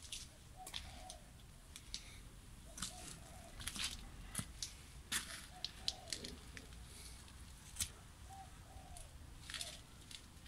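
Faint, short bird calls, often in pairs, recurring every second or two, with scattered crackles and clicks.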